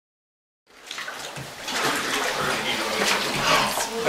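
Water sloshing in a baptistery tank as a person wades waist-deep in it, starting abruptly about a second in and growing louder.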